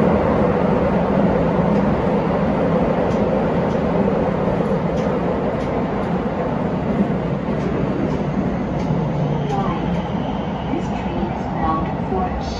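Keisei 3100 series electric train running through a tunnel heard from the cab: a steady rumble of wheels on rail with faint ticks, easing off gradually as the train slows into a station.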